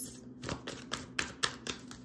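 A deck of tarot cards being shuffled by hand: a quick run of short card slaps, about five a second, starting about half a second in.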